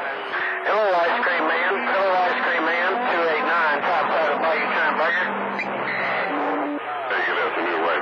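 CB radio receiving distant skip stations on channel 28: several garbled voices over the radio, overlapping one another, with steady low tones running underneath.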